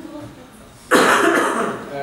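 A person coughing once, a sudden loud, harsh cough about a second in.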